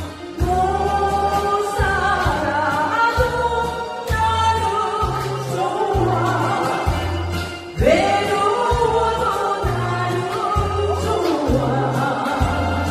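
A woman sings a Korean trot song into a handheld microphone over a karaoke backing track, with a steady bass line bouncing between two notes underneath.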